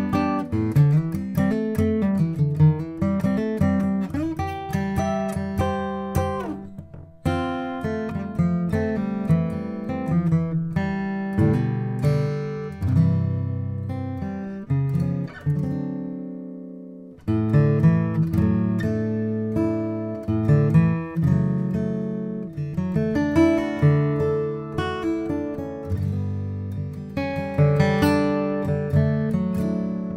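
A 1941 Gibson J-55 flat-top acoustic guitar with a mahogany body, played solo: a steady run of picked single notes and chords. About halfway through, a chord is left to ring and fade for a few seconds before the playing picks up again.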